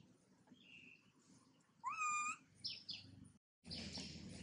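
A baby macaque gives one short, high-pitched cry about two seconds in: it rises and then holds for about half a second.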